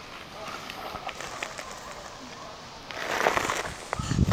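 Faint outdoor background with quiet, indistinct voices and small clicks. About three seconds in, a brief, much louder rush of noise.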